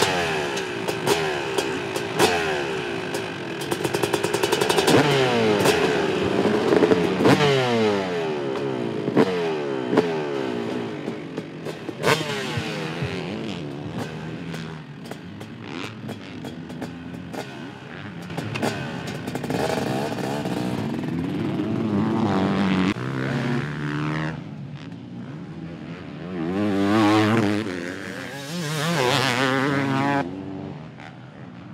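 2006 Suzuki RM250 single-cylinder two-stroke engine, fitted with an FMF Factory Fatty pipe and Shorty silencer, revving and riding. Its pitch climbs and drops repeatedly through throttle and gear changes, with scattered clicks. Near the end there are two loud rising-and-falling swells.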